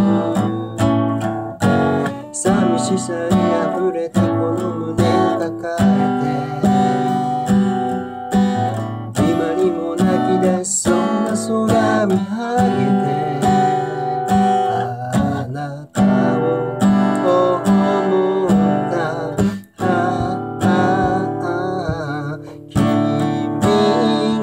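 Steel-string acoustic guitar strummed in a steady rhythm, its chords changing every second or two.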